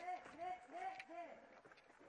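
A faint, distant shouting voice: a few drawn-out syllables over about the first second, then near silence.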